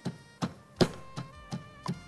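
Wooden pestle pounding chopped raw jackfruit in a small wooden mortar: six dull thuds, about three a second, with the loudest strike near the middle.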